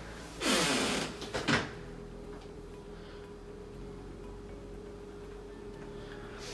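An interior door being opened: a brief swishing scrape in the first second, then a knock at about one and a half seconds. After that only a faint steady hum.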